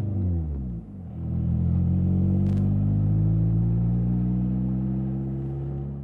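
Dodge Demon concept roadster's four-cylinder engine running as the car drives past. The engine note falls in pitch over the first second, dips briefly, then holds a steady note that sags slightly toward the end.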